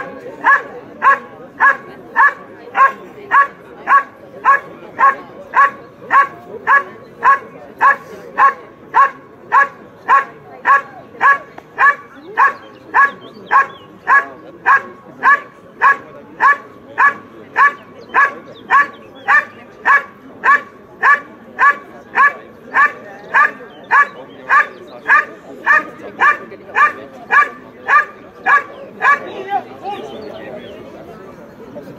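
Belgian Malinois barking steadily at the helper hidden in the blind, in the hold-and-bark of IPO protection work: short, evenly paced barks, a little under two a second, that stop near the end.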